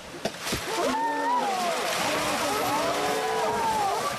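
Discharge water of the Tsūjun Bridge stone arch aqueduct bursting out of its outlets: a sudden rush of gushing water starts about half a second in and carries on loud and steady. A crowd of onlookers exclaims over it, and two sharp knocks come just before the rush.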